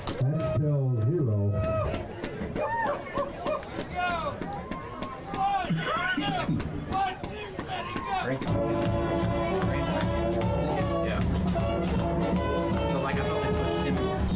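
Crowd voices calling and shouting during a break in play, then, about eight seconds in, music starts and plays on with a steady beat.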